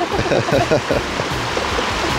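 Shallow mountain creek running over rocks, a steady rush of water.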